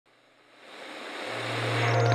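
Whoosh swelling up from silence and growing steadily louder, joined by a low steady hum a little past halfway: the rising build-up of a broadcaster's logo intro sting, leading into a musical hit.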